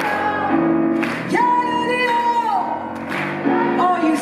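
A woman singing a jazz-soul song live with grand piano accompaniment. About a second in she holds one long note that falls away at its end.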